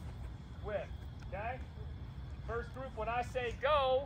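High-pitched girls' voices talking and calling out, a few words at a time and then more busily in the second half, over a steady low rumble.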